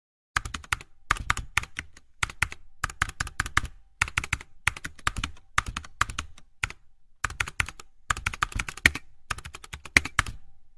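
Computer keyboard typing sound effect: short runs of quick key clicks separated by brief pauses.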